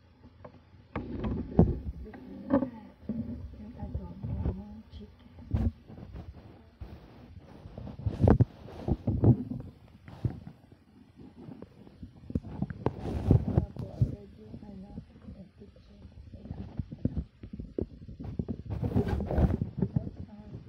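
Handling noise from a phone being picked up and carried while it records: irregular knocks, rubs and rustles right on the microphone, with snatches of a woman's voice.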